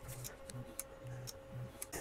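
An Artillery Sidewinder X2 3D printer running auto bed leveling: a series of faint clicks as the leveling probe taps the bed at measuring points, with short low buzzes from the stepper motors between taps and a faint steady whine.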